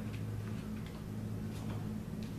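Room tone: a steady low hum with a few faint, irregular ticks.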